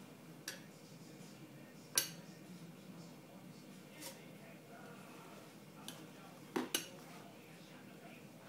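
A baby's metal spoon clinking against the bowl and the plastic high-chair tray: about six short, irregular knocks, the loudest about two seconds in and a quick double knock near the end.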